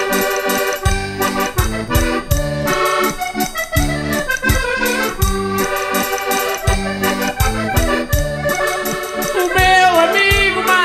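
Instrumental break of Portuguese folk music led by a concertina (diatonic button accordion) playing the melody in chords over a steady bass beat.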